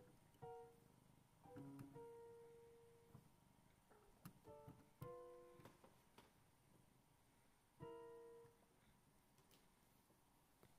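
An electronic keyboard sounding sparse, irregular single notes and small clusters of notes, each ringing and fading, with gaps of a few seconds between them, as a cat presses the keys at random.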